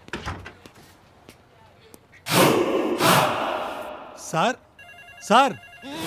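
A telephone ringing with a trilling, pulsed ring over the last second or so. It follows a loud noisy burst about two seconds in and comes with two short swooping cries.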